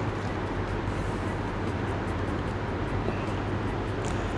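A steady low hum with an even noise over it, constant throughout.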